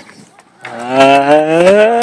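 A man's voice drawn out in one long "ooooh", starting about half a second in and rising steadily in pitch.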